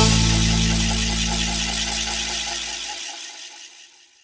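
The final chord of a morenada band's song is struck and held, with a cymbal-like crash ringing above it. It fades steadily away to silence near the end.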